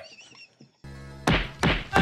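Movie-soundtrack spanking: an android teacher's hand coming down on a student's backside in rapid, heavy whacks, about three a second, starting a little over a second in over a low music score.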